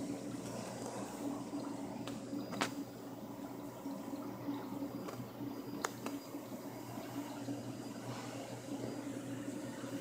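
Aquarium filtration running: a steady wash of circulating water over a constant low pump hum, with two sharp clicks, one about two and a half seconds in and one near six seconds.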